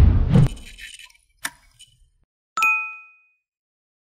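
Subscribe-button animation sound effects: a whoosh fading out in the first half second, two soft clicks about a second and a half in, then a single bright bell ding that rings briefly and fades.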